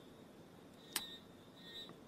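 Very quiet room tone in a pause between spoken phrases, with a single short click about halfway through.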